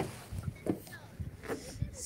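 Handling noise from a phone camera being turned around: a few short soft knocks and rubs over a low rumble.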